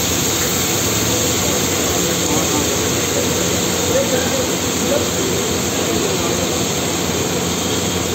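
Steady roar of a gas burner heating a large flat iron tawa, with chopped onions frying on it.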